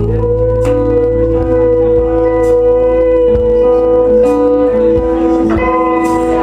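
Live pop band playing an instrumental passage, acoustic guitar, bass and drums under one long held note, with a few cymbal strokes.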